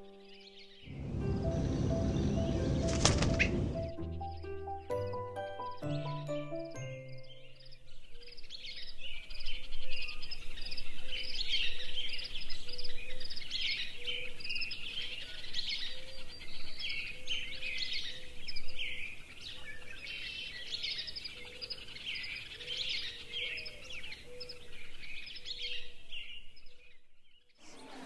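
A few seconds of music, a loud swell and then a short run of notes, gives way to birdsong: many quick chirps and trills from several small birds for about twenty seconds. The birdsong cuts off just before the end.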